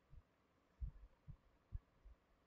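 Near silence broken by a few faint low thumps, four in under two seconds, the loudest about a second in: small knocks or bumps close to the microphone.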